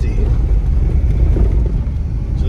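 VW Passat on the move, heard from inside the cabin: a steady low rumble of engine and road noise.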